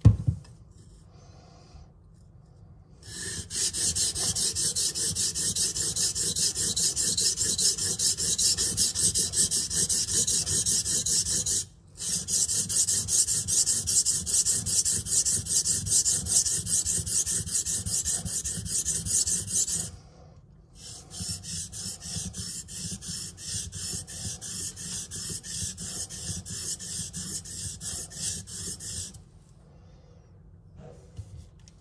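Thin flexible knife blade ground on a coarse 500-grit whetstone, raising a burr on the edge: rapid back-and-forth scraping strokes of steel on stone in three runs of about eight seconds, broken by short pauses, the last run quieter. A short knock at the very start.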